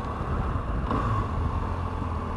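BMW R1200GS boxer-twin engine running at low town speed, a steady low rumble mixed with wind and road noise.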